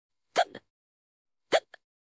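A person hiccupping twice, sharp and evenly spaced about a second apart, each hiccup with a brief second catch right after it.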